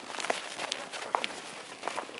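Irregular crunching footsteps on snow, with a few sharp clicks among them.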